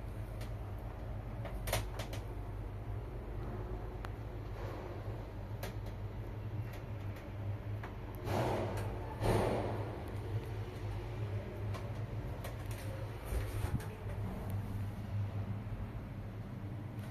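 Inside an old two-speed traction elevator car: a steady low hum from the running lift, with the car's sliding doors clattering twice about eight and nine seconds in, and a few lighter clicks and knocks around them.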